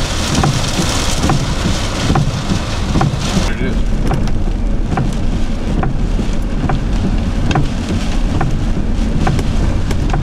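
Heavy thunderstorm rain and wind beating on a vehicle, heard from inside, with scattered sharp taps of drops hitting the glass and body. The hiss is strongest in the first three or so seconds, then eases a little.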